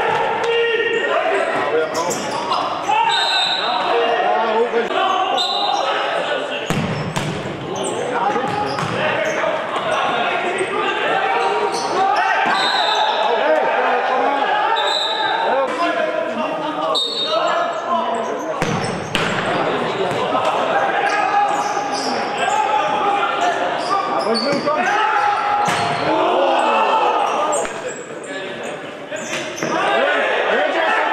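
Futsal ball being kicked and bouncing on a hard indoor court, with sharp impacts scattered through, while players' voices call out throughout in an echoing sports hall.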